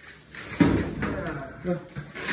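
A man's voice straining with effort as he hauls a dead wild boar, starting suddenly about half a second in, then a short spoken word near the end.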